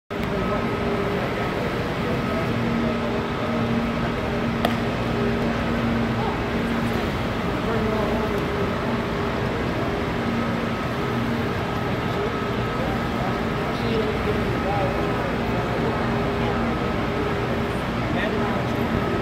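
Steady hum and rush of a large indoor aquarium hall, with several constant tones running through it and a single sharp click about four and a half seconds in.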